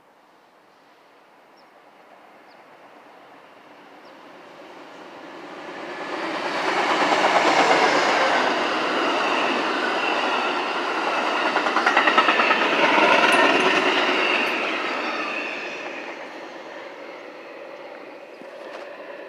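Amtrak passenger train with bi-level Superliner cars passing at speed: it builds from a couple of seconds in, is loudest for about ten seconds as the train goes by with rapid wheel clicks over the rail joints, then fades near the end.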